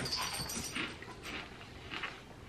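A dog whining softly, a thin high whine in the first half-second.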